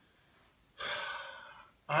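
Near silence, then about a second in a man takes one audible breath lasting about a second, just before he speaks again.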